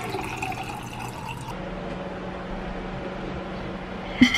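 Water pouring from a plastic pitcher into a drinking glass, stopping about one and a half seconds in. A quiet room tone with a steady low hum follows.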